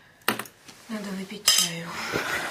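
Cutlery clinking against a plate: two sharp clinks, about a quarter second and a second and a half in, with a short low hum between them.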